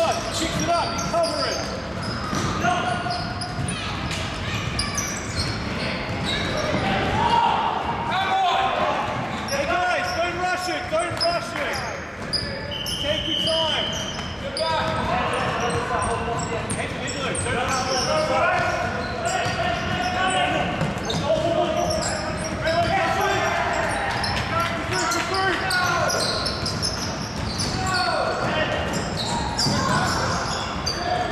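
Sounds of a basketball game in a gym hall: the ball bouncing on the wooden court, sneakers squeaking and players' indistinct calls, all with hall reverberation. A short, steady, high whistle blast sounds about halfway through, which fits a referee's whistle.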